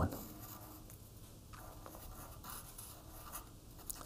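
Faint scratching of a pen writing on paper, in a few short strokes starting about a second and a half in.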